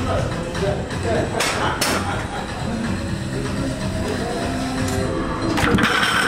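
Electronic background music with sharp metallic clanks: a pair about a second and a half in, and a louder clank near the end as the loaded barbell is set back into the bench-press rack.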